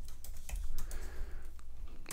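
Typing on a computer keyboard: a handful of scattered, light keystrokes.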